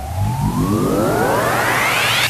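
Electronic music build-up: a synthesizer riser whose pitch sweeps steadily upward for about two seconds, leading into a dubstep drop.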